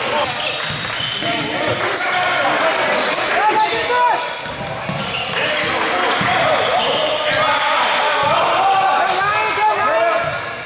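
Live basketball game in an echoing gym: a basketball bouncing on the hardwood court, sneakers squeaking, and players and coaches calling out indistinctly.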